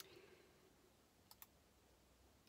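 Near silence: faint room tone with a few small, faint clicks, one at the start and two close together a little past the middle.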